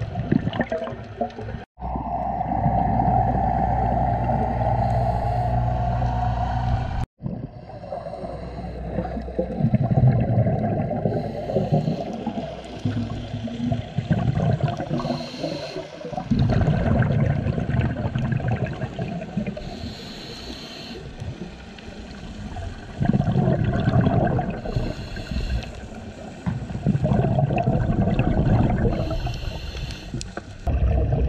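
Underwater scuba breathing: a diver's exhaled bubbles from the regulator gurgling and rumbling in bursts every few seconds. The sound cuts out briefly twice in the first seven seconds.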